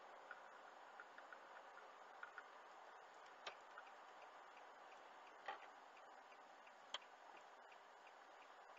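Faint, steady road noise inside a moving car, with scattered light irregular ticks and three sharper clicks, about midway and near the end.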